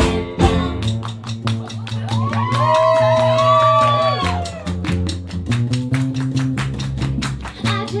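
Live band playing an instrumental groove: upright bass notes and electric guitar, with hand claps on the beat throughout. A held melody that bends in pitch rises over the band about two to four seconds in.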